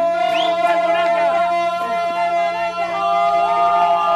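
Several voices holding long sustained notes together, unaccompanied, with a few sliding up or down.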